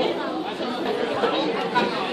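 Indistinct chatter of many voices at once in a busy cafeteria, a steady babble with no single voice standing out.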